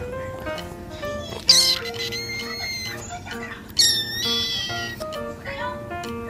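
Kitten meowing twice, high-pitched: a short cry about a second and a half in, then a louder, longer one at about four seconds. Background music plays throughout.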